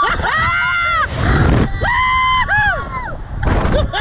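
Two riders screaming and whooping on a Slingshot reverse-bungee ride just after launch: a string of high, drawn-out screams that rise and fall, with wind rushing over the microphone twice between them.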